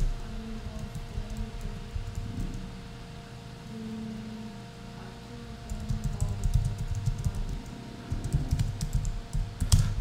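Typing on a computer keyboard: a run of quick key clicks, thickest over the last four seconds.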